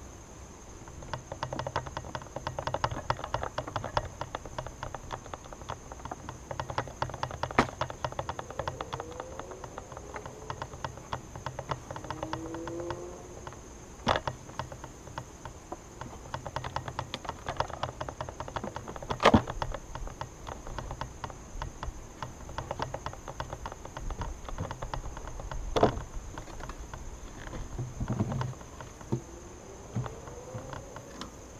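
Honeybees buzzing around an opened hive, a few flying close past with a rising and falling pitch, over a dense crackle of small clicks. Four sharp knocks come at intervals as wooden hive covers are taken off and set down.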